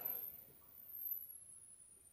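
Faint handling sounds from a tote handbag as hands fumble at its inside hook closure, with no clear click of it catching.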